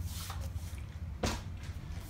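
Faint handling noise from a hand-held recording device being carried and moved about: two soft brushing sounds, one near the start and one a little past the middle, over a low steady hum.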